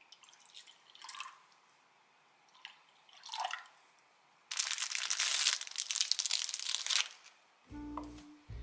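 Milk poured from a carton into a glass bowl, then a short splash of liquid poured in from a small glass, falling in pitch as it lands. About four and a half seconds in comes a loud, dense crackling of two and a half seconds, and music starts near the end.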